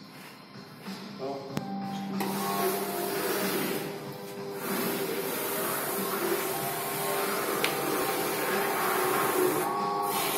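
Automatic shoe shine machine starting up about two seconds in, its rotating brushes running against a leather shoe with a steady whirring brush noise that dips briefly a little later.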